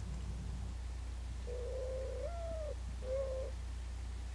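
Mourning dove cooing: a long, low coo that steps up in pitch and falls away, followed by a short coo. It is a parent's call announcing feeding time to its squabs.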